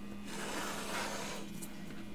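Faint rubbing, rustling handling noise over a steady low hum.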